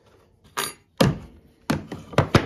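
Knocks of hand tools on a wooden workbench as a chisel is set down and a bar clamp is taken off the work: a short scrape, then a sharp thunk about halfway through and another knock near the end.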